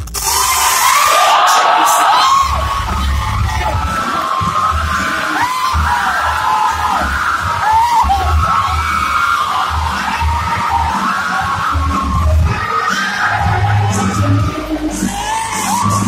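Dance music playing loud over a sound system with a pulsing bass beat, and many voices yelling and cheering over it.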